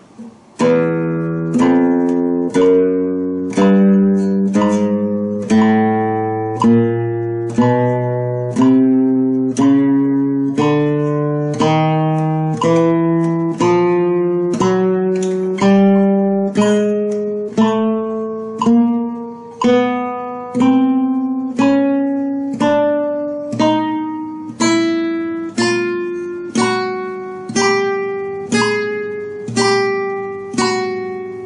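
Nylon-string flamenco guitar playing a chromatic scale in first position, one plucked note at a time at a slow, even pace of about one note a second, climbing steadily in pitch.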